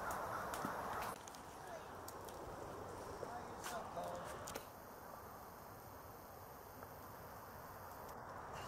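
Faint outdoor background noise with a few light clicks and scuffs, like footsteps on gravel, and two or three faint short calls around the middle.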